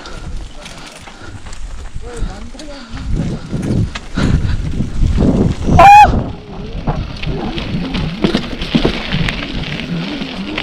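Mountain bike rolling fast down a concrete path: steady tyre rumble and wind noise. About six seconds in comes one short, loud, honking squeal from the disc brakes as the rider brakes.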